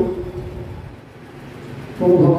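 A pause in group devotional chanting (naam kirtan): the held note ending one chanted line dies away within the first half second, leaving only a faint low murmur until the next line.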